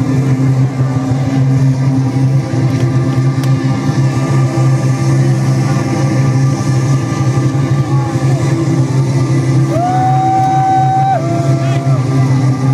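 Loud festival sound system during a DJ set, picked up distorted by a small recording device: a steady, continuous low drone with no clear beat, and voices in the crowd. Near the end, a single held high note steps down in pitch.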